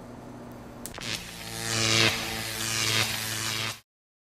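A sharp static snap just under a second in as the body charged by a Van de Graaff generator discharges to ground through a fingertip, followed by a steady electric buzz lasting nearly three seconds that cuts off suddenly.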